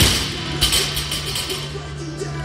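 A loaded barbell with rubber bumper plates dropped onto a rubber gym floor: a heavy thud as it lands and a second, smaller thud as it bounces about half a second later. Loud background music plays throughout.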